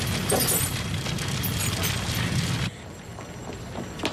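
A building fire burning: a dense roar full of crackles and crashes. It cuts off suddenly about two and a half seconds in, leaving a much quieter background.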